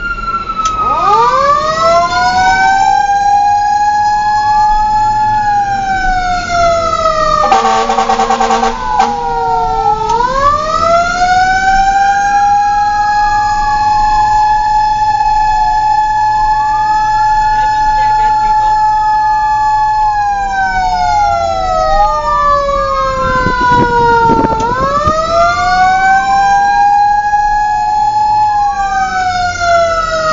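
Fire truck siren wailing, two tones sweeping slowly up and down out of step with each other, heard from inside the cab. A steady, pulsing horn blast sounds for about a second and a half, about eight seconds in.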